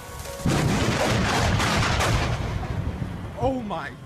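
Thunder from a very close lightning strike: a sudden loud crack about half a second in, then a rumble that fades over the next two seconds or so.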